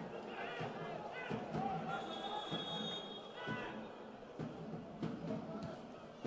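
Faint live sound from a football pitch: distant players' shouts, a faint high whistle tone lasting about a second from two seconds in, and a few thuds of the ball being kicked.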